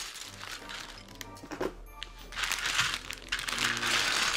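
Clear plastic parts bag crinkling as it is cut and pulled open, loudest in the second half, over steady background music.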